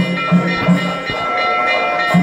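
Temple ritual music: a drum beats about three times a second, then pauses about a second in, under several sustained ringing tones that hold throughout. A new, higher held tone enters about halfway.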